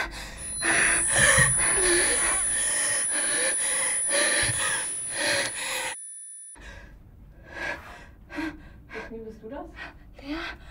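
A young woman gasping and crying in ragged breaths, under a steady high-pitched ringing tone. About six seconds in, the tone and sound cut off abruptly. After a brief gap come short, quick gasping breaths.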